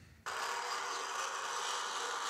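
Toroidal coil winding machine running with a steady whir and rattle, played from a video through the lecture-hall speakers; it starts abruptly about a quarter second in.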